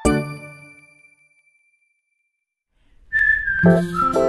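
A bright ding that rings out and fades over about a second and a half, then silence, then cheerful background music starting about three seconds in, led by a high whistle-like melody.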